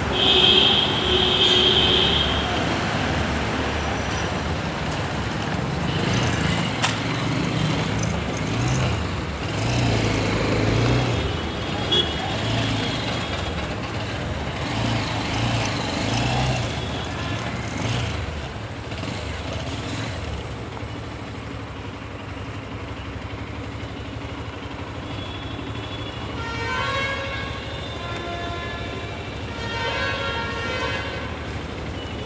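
City traffic heard from a moving motorcycle: steady engine and road noise, with a vehicle horn honking loudly in the first two seconds.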